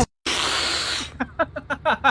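A loud hiss lasting under a second, followed by a person laughing in short, rhythmic pulses.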